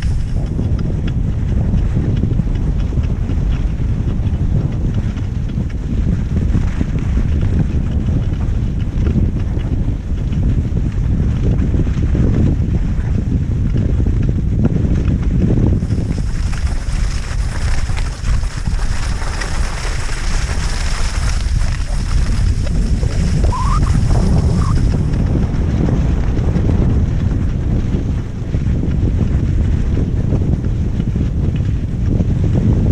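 Wind buffeting the microphone of a camera moving fast along a snowy track: a loud, steady low rumble. For about nine seconds past the middle a brighter hiss joins it, and there are two faint short squeaks near the end of that stretch.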